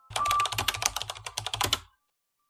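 Typing sound effect: a quick run of computer-keyboard keystrokes as on-screen text is typed out, stopping suddenly just before the end.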